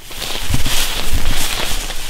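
Footsteps swishing and crunching through tall grass, a busy, crackly rustle of vegetation with some low rumble.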